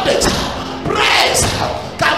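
A man's voice preaching loudly through a handheld microphone, with a few thuds among the words.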